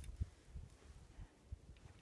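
Near quiet: a faint low rumble of a camera being handled and moved, with a soft click right at the start and a dull knock just after.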